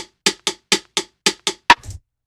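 The sparse percussion outro of a hip-hop beat playing back from a computer: short dry drum hits about four times a second with gaps of silence between them. A louder hit with a low thud comes near the end, then the playback cuts off.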